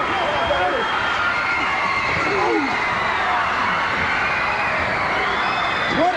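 Men shouting and yelling over a steady din of crowd noise, with no clear words.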